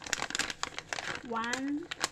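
Plastic packet crinkling and rustling as it is handled, in rapid irregular crackles.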